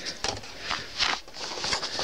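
Cardboard model packaging being handled close to the microphone: rustling and scraping, loudest about a second in, with a few light knocks.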